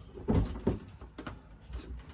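A few short clunks and faint clicks as a pull-out shower head and hose are pushed back into a basin mixer tap and handled.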